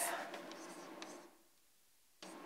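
Chalk writing on a blackboard: faint scratching with a couple of light taps, stopping a little over a second in.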